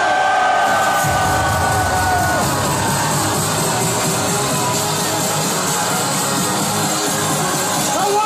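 Electronic dance music played loud through a stadium PA, with the crowd cheering. A held synth tone fades over the first couple of seconds while a deep bass comes in about a second in.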